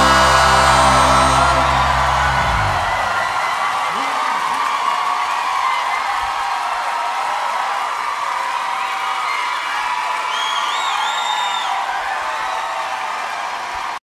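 The band's final chord rings out and stops about two and a half seconds in, then a theatre audience cheers, whoops and claps. A high, shrill whistle from the crowd comes near the end.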